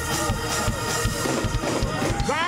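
Up-tempo gospel church music with a fast, steady drum beat.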